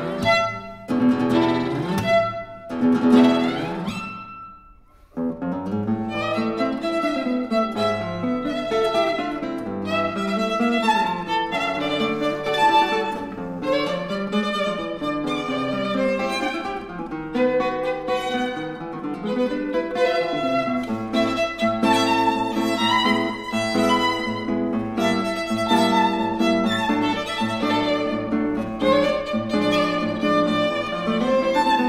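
Violin and classical guitar playing a piece together, the violin carrying the melody over the guitar's plucked accompaniment. Loud accented chords in the first few seconds die away into a brief pause about four seconds in, then both resume.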